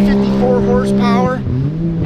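Can-Am Maverick X3's turbocharged three-cylinder engine running hard on the track, its pitch steady, then dipping sharply about one and a half seconds in as the throttle comes off, then climbing again.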